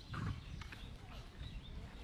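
Small birds chirping in short, repeated calls, over a steady low rumble. A brief louder knock or scrape comes about a quarter second in.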